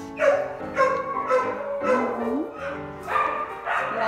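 A dog barking in a series of short bursts, over background music.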